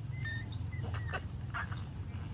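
Newborn puppies squeaking and whimpering while they nurse: several short, high calls in quick succession, some sliding slightly in pitch, over a steady low hum.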